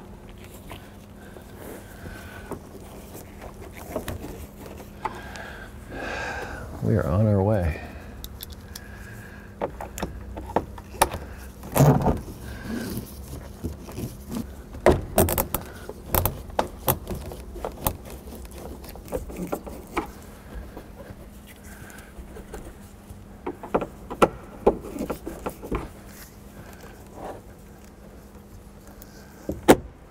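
Scattered clicks, taps and light metallic clinks of a hand screwdriver and screws as a flip-down monitor's mounting bracket is screwed up into a minivan headliner. A brief wordless vocal sound comes about seven seconds in.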